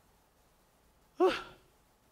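A man's single short sigh into a handheld microphone, breathy with a voiced tone that falls in pitch, a little past halfway through.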